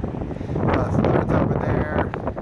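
Wind buffeting the microphone over rough ocean surf. A faint, indistinct voice comes through near the end.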